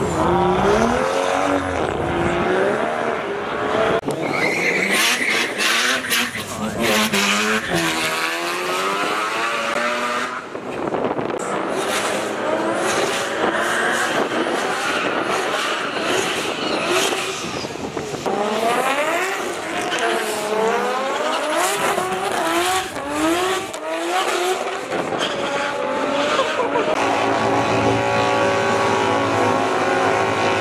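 Drag racing cars' engines revving hard, the pitch climbing and falling again and again, with tyres squealing through a burnout. Near the end an engine holds a steady high note.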